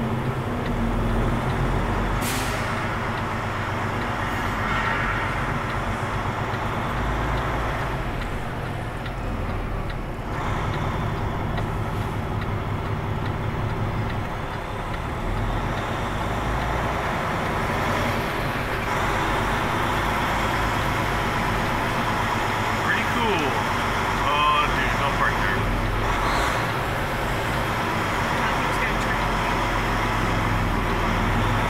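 Semi-truck's diesel engine running at low speed, heard from inside the cab as the truck creeps forward, with a brief sharp sound about two seconds in.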